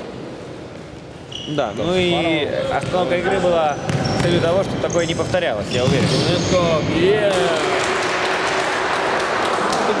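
Indoor futsal play in an echoing sports hall: after a quieter first second, players shout to each other while the ball is kicked and bounces on the hard court floor. In the last few seconds the voices give way to a steady wash of hall noise.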